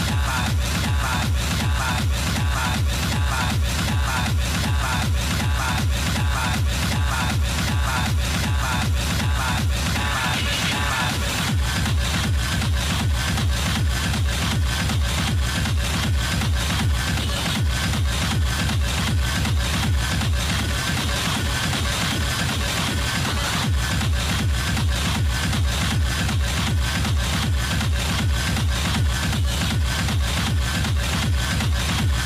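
Hard techno (schranz) DJ mix: a fast, pounding four-on-the-floor kick drum with heavy bass and dense percussion. A new higher synth line comes in about ten seconds in.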